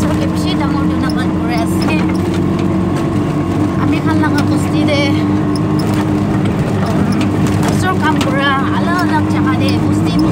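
Motor vehicle engine running at a steady, unchanging pitch, heard from inside the open-sided vehicle as it drives along.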